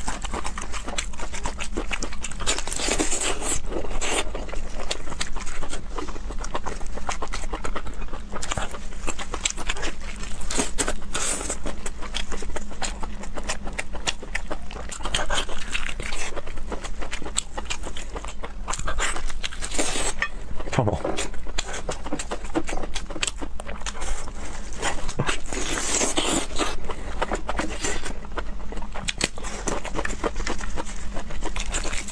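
Close-miked eating sounds: wet chewing, lip smacking and slurping on a glazed braised joint of meat on the bone, with the meat and skin being torn apart by hand and plastic gloves crinkling. A dense run of small clicks and crackles throughout, with no pauses.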